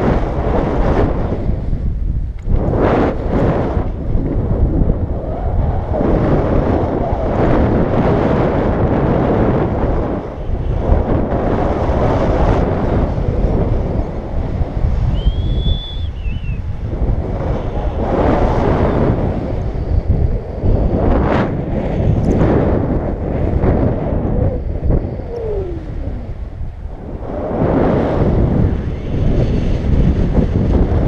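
Wind rushing over the microphone of a pole-mounted camera on a tandem paraglider in flight. It is a loud, rumbling noise that surges and eases every few seconds with the gusts and airspeed.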